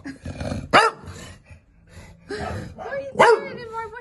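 English bulldog grumbling and growling, with a sharp bark about a second in. It sounds cross.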